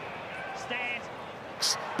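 Football stadium crowd noise, a steady murmur under a lull in the TV commentary, with a faint snatch of voice a little under a second in and a short hiss near the end.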